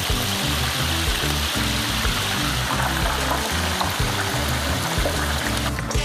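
Breaded chicken wings deep-frying in a basket of hot oil, a steady bubbling sizzle that stops near the end, under background music with a bass beat.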